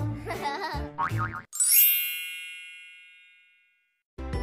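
Children's background music with a sung or voice-like melody cuts off about a second and a half in. A bright chime sound effect follows, sweeping up and ringing out as it fades over about two seconds, then silence.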